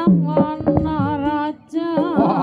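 Live Javanese jaranan accompaniment music: a wavering melody over steady held tones and drum strokes. It drops out briefly near the end, then resumes.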